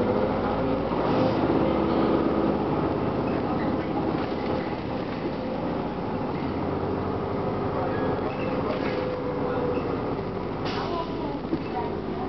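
Detroit Diesel Series 50 four-cylinder diesel of a 1999 Gillig Phantom transit bus running steadily under way, heard inside the passenger cabin along with road noise. A short knock from the bus body sounds near the end.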